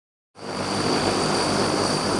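Turboprop engines of a military transport aircraft running on the apron: a steady rush with a constant high-pitched whine and a low hum, fading in about a third of a second in.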